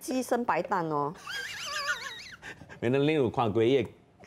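People talking, and between the words a high-pitched, wavering voice sound lasting about a second and a half.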